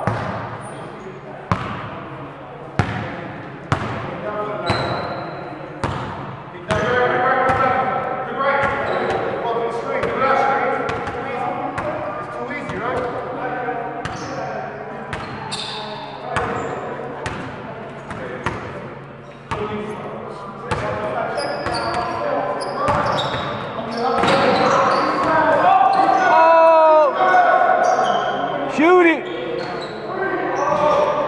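A basketball bouncing on a gym floor again and again, mixed with players' shouts and chatter that echo in the large hall. A couple of short high squeaks come near the end.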